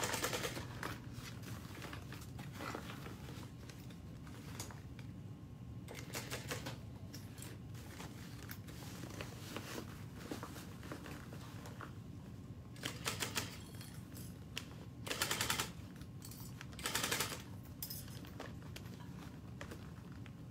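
Industrial sewing machine stitching in several short bursts of rapid needle strikes, with a low steady hum between them.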